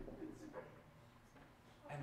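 Near silence: quiet room tone, with a faint low murmur in the first half second.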